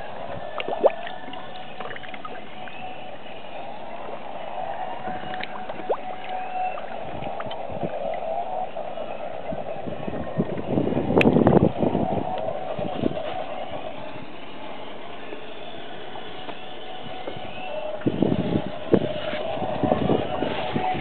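Muffled gurgling and sloshing of water around a camera held just under the surface, with a louder burst of splashing about eleven seconds in and a few more splashes near the end.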